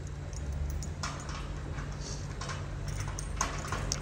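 Faint, irregular light clicks and taps: a small dog's claws and paws on a concrete floor, with footsteps, over a low steady hum.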